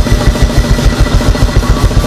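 Church band's drum kit playing a fast, even run of low drum hits, about seven a second, over a held keyboard chord.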